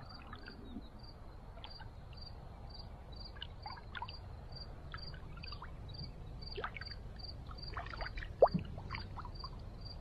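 Small ripples lapping and trickling at the edge of calm, shallow bay water, with one sharper splash about eight and a half seconds in, under a low steady rumble. An insect chirps steadily and high-pitched in the background, about three chirps a second.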